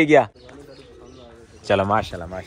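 A pigeon cooing faintly in the pause between a man's words.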